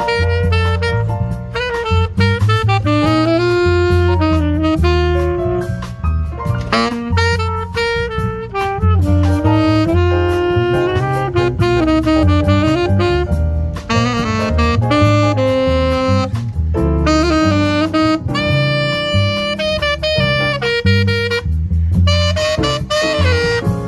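Live jazz: a saxophone plays a continuous melodic solo line, with an upright bass plucking a low note pattern underneath.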